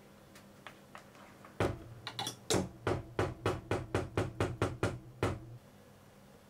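Metal beaters of an electric hand mixer knocking against the side of a metal saucepan of chocolate whipped cream. The knocks come in a run of about a dozen, roughly four a second, over a low hum, and stop shortly before the end.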